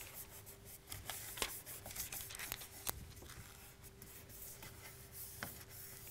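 Faint rubbing and crinkling of fingertips pressing and smoothing an adhesive transfer film onto a painted wooden tray to make it stick, with a few small sharp clicks, over a faint steady hum.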